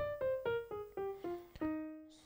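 Piano playing the E-flat major scale descending, one note at a time about a quarter second apart, ending on a held low E-flat that fades away.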